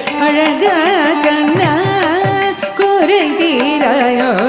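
Carnatic classical music in Charukesi raga: a female voice sings a fast melody with quick wavering pitch ornaments (gamakas), over regular mridangam drum strokes and a steady drone.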